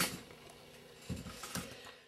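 Faint handling noises at a craft desk: a sharp click right at the start, then a few soft knocks and clicks about a second in as a paper card is set down on the desk.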